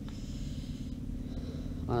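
Steady low room hum of several held tones, with a faint hiss in the first second.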